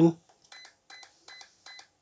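Brushless ESC in programming mode sounding four short, faint, high-pitched beeps about 0.4 s apart. The four beeps signal that the low-voltage-cutoff parameter is now set to its fourth value, 3.0 V per cell.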